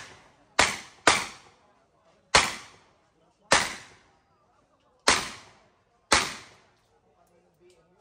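Handgun shots fired in a practical shooting stage: six single sharp reports, irregularly spaced, with the first two about half a second apart and the rest a second or so apart. Each shot has a short echoing tail.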